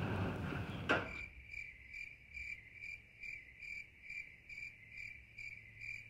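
Cricket chirping: short high chirps repeating evenly at about three a second. They begin abruptly after a brief click about a second in.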